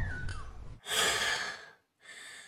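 A woman sighing heavily, two long breaths out one after the other, as when worn out and out of breath.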